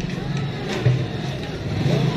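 A motor vehicle engine running in the street, a steady low hum, with a few faint crunches of a cat chewing dry food close by, the loudest about a second in.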